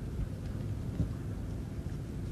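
Low, steady outdoor rumble, with a single short thump about a second in.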